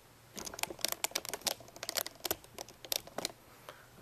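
A quick run of light clicks and taps, about a dozen, from handling metal folding knives and the camera at a table.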